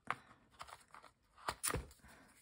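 Scissors snipping through foam mounting tape on a card panel: a sharp snip right at the start, a few faint ticks, then a louder cluster of clicks with a light knock near the end.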